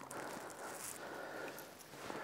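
Faint handling noise as a fishing lure is worked free of a smallmouth bass's mouth over a landing net, over a low, steady open-air background.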